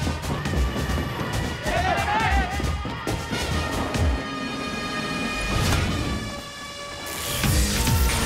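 Action film score with heavy drum hits under sustained tones. Voices shout briefly about two seconds in, and the music swells up sharply near the end.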